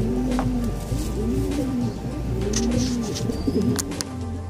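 Domestic pigeons cooing: a low coo that rises and falls, repeated about once a second, with a couple of sharp clicks.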